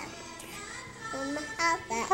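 A toddler's voice singing a few short held notes, sing-song vocalizing, in the second half.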